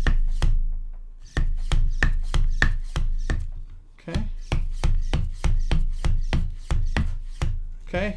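Hand vacuum pump on an underwater camera housing's vacuum valve, worked in quick strokes: a run of sharp clicking strokes, about three a second, with a short pause about halfway. Each stroke draws more air out of the housing, pulling a vacuum so the housing's leak-detection light can confirm the seal.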